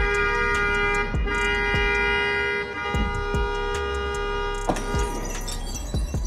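Car horn held in one long, unbroken blast that cuts off near the end, the horn being leaned on at length.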